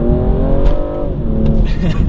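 BMW M235i's turbocharged 3.0-litre inline-six under hard acceleration, heard from inside the cabin. The engine note rises, drops sharply with an upshift of the eight-speed automatic about a second in, then settles lower.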